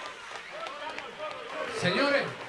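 Many voices talking and calling out at once, with scattered sharp clicks, and one voice rising to a louder shout or laugh near the end.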